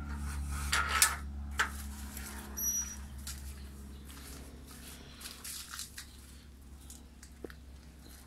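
A few light clinks and knocks in the first three seconds, over a steady low hum.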